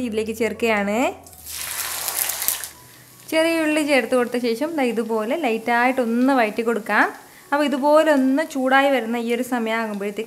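Sliced shallots tipped into hot oil in a kadai, sizzling for about a second and a half a little over a second in. A woman's voice runs through the rest and is louder than the sizzle.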